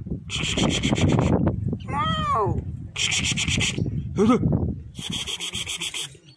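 Three bursts of coarse scraping, each about a second long, with a short call that falls in pitch between the first two.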